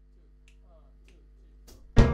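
Faint finger snaps, a little under two a second, counting off the tempo over a low steady electrical hum. At the very end a jazz trio of keyboard, upright bass and drums comes in loudly on the downbeat.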